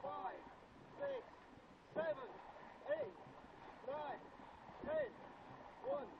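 A voice giving a short call about once a second, rising then falling in pitch, in time with a dragon boat crew's paddle strokes, over a steady wash of water.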